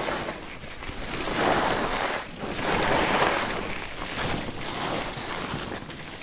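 Skis scraping and hissing over packed snow, swelling and fading with each turn about every second and a half, with wind rushing over the microphone.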